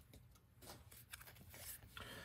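Near silence, with a few faint rustles and light ticks of a stack of baseball cards being slid out of an opened pack and handled.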